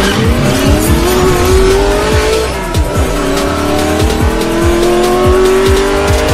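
Race car engine sound effect accelerating, its pitch rising, dropping at a gear change about two and a half seconds in, then rising again, over electronic music with a steady beat.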